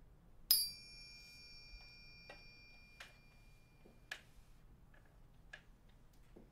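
A piece of tableware struck once, giving a clear ring of several high tones that hangs for about three and a half seconds and then stops with a click. A few faint knocks and clicks follow.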